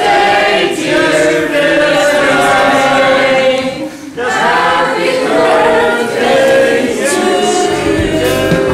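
A group of voices singing together unaccompanied, with a brief break about four seconds in.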